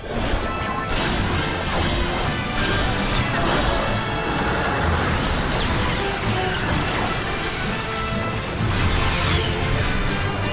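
Dramatic cartoon soundtrack music layered with loud, dense sound effects for an energy-fusion transformation sequence, starting suddenly and running on without a break.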